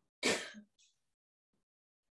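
A person clearing their throat once, briefly, about a quarter of a second in.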